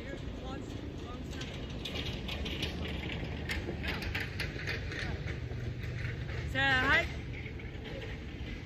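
A person's short, wavering, pitched vocal call, the loudest thing, near the end, over a steady low outdoor rumble.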